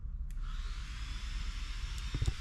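A power grinder running steadily: an even, high hiss that starts abruptly a moment in and carries on without a break.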